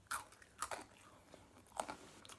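Crunchy pretzel sticks being bitten and chewed: a few short, sharp crunches spread out over the two seconds.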